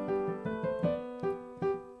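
Piano played with both hands, a short passage of single notes sounded together in both hands, a new note struck about every third of a second.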